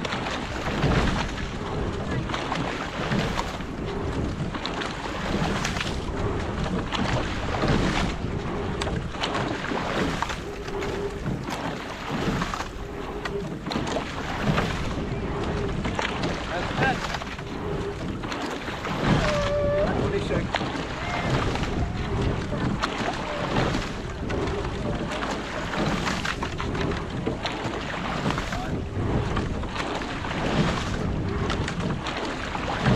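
Quad scull being rowed at a steady rate, with a repeating stroke about every two and a quarter seconds: oar blades catching and pulling through the water and the oar handles and sliding seats working on each stroke. Water washes past the hull and wind blows on the microphone.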